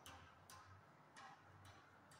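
Very faint, irregular short swishes of a hand wiping marker writing off a whiteboard, about one stroke every half second.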